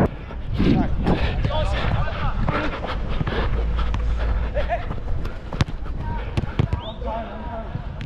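Sounds of an amateur football match: players' short shouts and calls across the pitch, then a few sharp kicks of the ball in the second half, over a steady low rumble.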